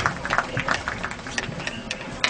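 Spectators applauding, the clapping thinning out to scattered claps.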